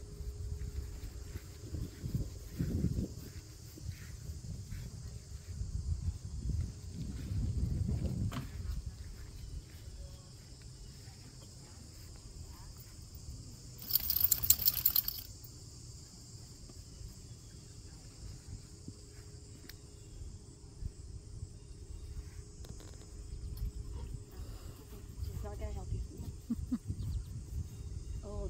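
Steady high-pitched chorus of insects in summer grass, over a low, uneven rumble. About halfway through comes a brief, louder high-pitched burst lasting around a second and a half.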